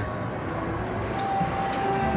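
Buffalo Ascension video slot machine spinning its reels, playing the game's electronic spin tones over casino background noise; a single held tone sounds for about a second in the second half.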